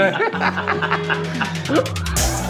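Brief chuckling laughter over background music with steady low notes and a ticking beat.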